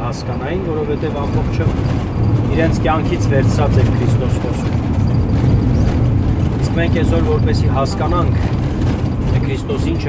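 Car driving, heard from inside the cabin: a steady low rumble of engine and road noise, with voices talking in short bursts now and then.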